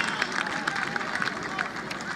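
Pitchside spectators talking and calling out, with scattered hand claps, the crowd noise easing slightly.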